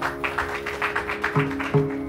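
Mridangam playing a rapid run of light, even finger strokes over a steady drone, then two deeper bass strokes near the end, in Carnatic concert accompaniment.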